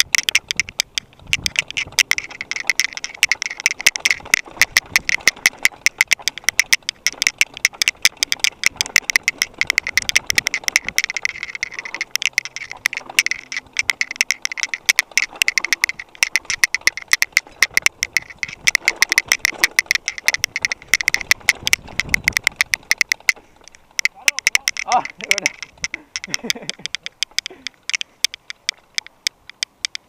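Mountain bike clattering and rattling over a rough dirt trail, heard through the rider's action camera: a dense run of fast clicks and rattles, with a short wavering pitched sound about three-quarters of the way through.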